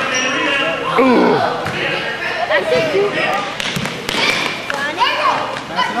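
A basketball bouncing on a gym floor, with a few sharp impacts around the middle, among overlapping shouts and calls of children and spectators that echo in a large hall.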